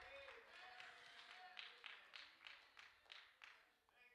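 Near silence, with faint hand clapping, about three claps a second, that stops after a couple of seconds.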